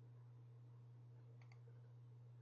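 Near silence with a steady low hum, and a faint computer mouse click, a quick double tick, about one and a half seconds in.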